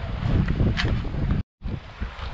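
Wind buffeting the camera's microphone: an uneven low rumble, cut by a split-second dropout to silence about one and a half seconds in.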